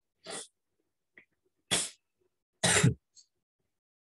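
Three sudden bursts of breath from a person: a softer one, then two loud ones about a second apart.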